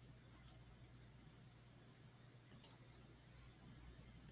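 Computer mouse clicking faintly, picked up by a webinar microphone: two quick clicks near the start, then three more about two and a half seconds in, over a faint steady low hum. The clicks bring up a slideshow's right-click menu to end the presentation.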